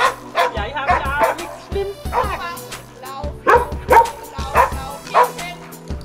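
A dog barking repeatedly in short, sharp barks during an agility run, over background music with a steady beat.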